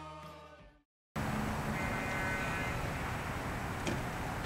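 Rock theme music fading out, a brief dead silence at a cut, then steady outdoor background noise with a short high-pitched tone about a second after it starts and a faint click near the end.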